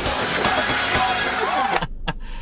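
Live gospel music recording: a woman singing into a microphone over a loud, noisy congregation, cutting off abruptly near the end.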